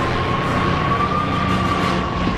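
Sound effect of a P-51 Mustang propeller plane's engine droning as it climbs away, with a high whine that rises a little and then falls.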